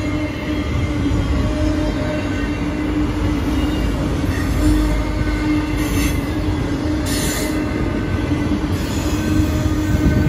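Enclosed autorack freight cars rolling past at speed: a steady rumble of wheels on rail with a constant low tone running through it. Brief high-pitched wheel squeals come about six and seven seconds in.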